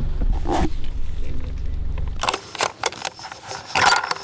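Low rumble of a car heard from inside the cabin, which cuts off abruptly about two seconds in. Then come a few sharp metallic clicks and clacks from a scoped hunting rifle being handled, with the loudest near the end.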